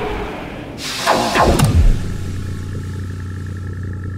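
Electronic intro sound design. A burst of noise with falling, sweeping tones comes about a second in, then settles into a steady low bass drone with faint, high held tones above it.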